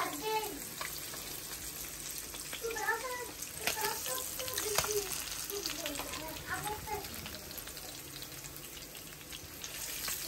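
Pabda fish frying in hot oil in a non-stick pan with a steady sizzle, and a metal spoon clicking against the pan a couple of times as the fish are turned.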